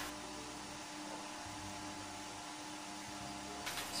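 Steady background hiss with a low electrical-type hum, and no distinct events: room tone.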